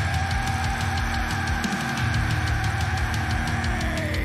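Post-hardcore/metalcore band playing: fast, heavy drums and guitars under one long held high note.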